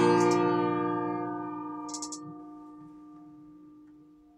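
Acoustic guitar's final strummed chord ringing out and fading slowly away, with a brief faint noise about two seconds in.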